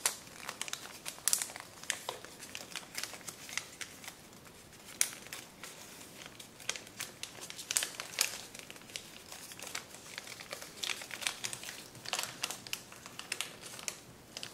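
Kraft paper crinkling and crackling under the fingers as a many-layered origami model is folded and pressed into creases, with irregular sharp crackles throughout.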